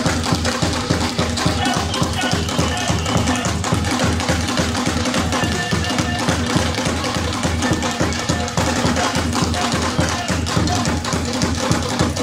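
Live traditional Mozambican music: a fast, steady rhythm played by hand on tall laced drums, continuing without a break.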